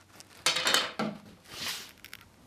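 A wooden spindle rubbing and knocking as it is tried in a hole in a wooden chair arm rail, followed by a steel spiral reamer scraping into the hole. There are three short rubs and knocks, about half a second, one second and near two seconds in.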